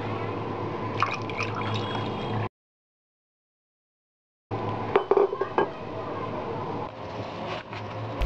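Brewed tea being poured over ice cubes into a glass, filling it, with a few clinks of ice against the glass. The sound cuts out completely for about two seconds in the middle.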